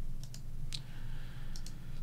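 A few light computer mouse clicks, in pairs, the loudest about three-quarters of a second in, over a low steady hum.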